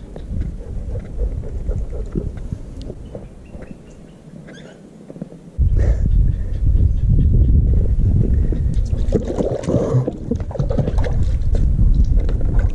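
Water splashing and sloshing in a shallow plastic kiddie pool as a chihuahua paddles through it, much louder from about halfway in.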